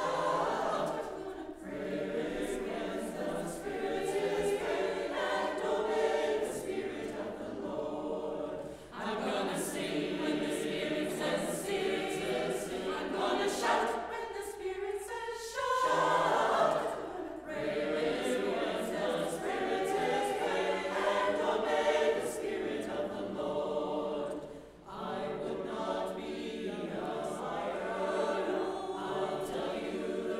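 Mixed church choir of men's and women's voices singing, phrase after phrase, with short breaks for breath about nine seconds in and again near the end.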